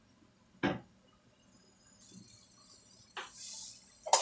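A wooden spoon knocks sharply once against a stainless steel frying pan of diced potatoes and tomatoes, then a second, lighter knock a little past three seconds in. A faint sizzle from the pan comes in about halfway and grows louder briefly near the end.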